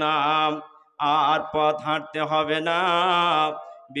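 A man's voice chanting a Bengali Islamic sermon in a drawn-out, melodic sung tune: long held notes with a wavering pitch, broken by a short pause just before a second in and tailing off near the end.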